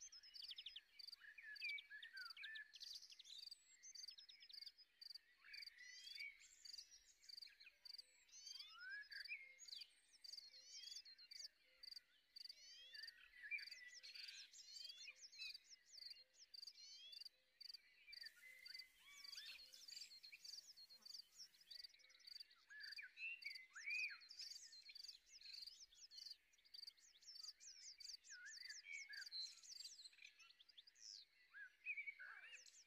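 Faint nature ambience: insects chirping in a steady, even rhythm, about twice a second, with many short bird chirps over them.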